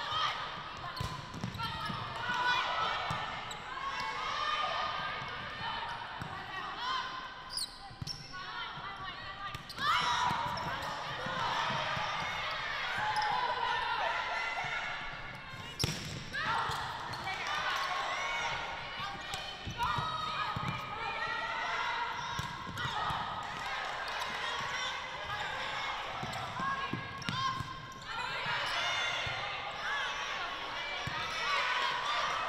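Indoor volleyball play in a large gym: players' voices calling out and shouting through the rallies, with the sharp smack of ball contacts, the loudest about halfway through.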